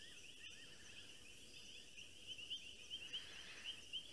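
Faint night chorus of the bush: a continuous high, chirping trill, with a still higher hiss coming and going over it.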